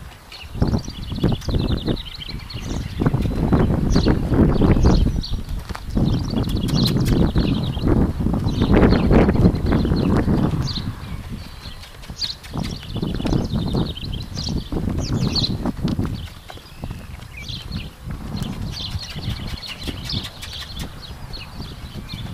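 Hoofbeats of a saddled Nokota horse on the dirt of a round pen as it is ridden around, moving up to a lope, over a low rumbling noise that rises and falls.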